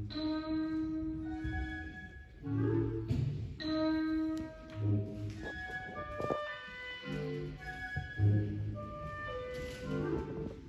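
A school concert band of brass and woodwinds playing a piece in held chords and short phrases with brief breaks between them, echoing in a large gymnasium.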